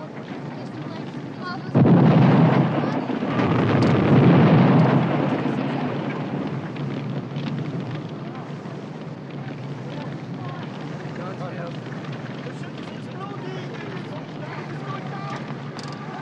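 Two loud blasts close together, the first sudden about two seconds in and the second swelling about a second later, fading away over several seconds into a steady low rumble with murmuring voices.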